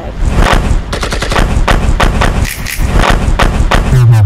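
A loud, rapid, unbroken string of sharp bangs or cracks, many per second, filling the whole stretch.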